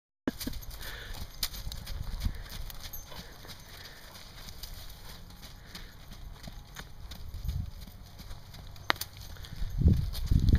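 Hoofbeats of a Thoroughbred gelding moving loose around a pen: dull, irregular thuds of hooves on soft dirt and straw, heaviest near the end.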